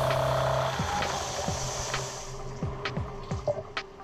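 CNC tool grinder with its grinding wheel cutting a carbide blank under flood coolant: a steady machine hum with a high tone over coolant spray hiss. The tone stops about a second in, and the hum and spray die away about two seconds in as the grind ends. Quieter scattered clicks and faint background music follow.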